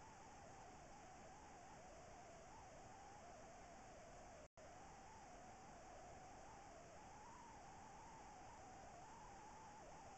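Near silence: a steady faint hiss with a thin wavering whine in it, broken by a split-second dropout about four and a half seconds in.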